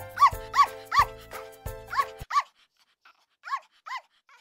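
A small dog giving a string of short, high-pitched yips, about seven in all, over background music that cuts off just after two seconds in; the last two yips come near the end with no music behind them.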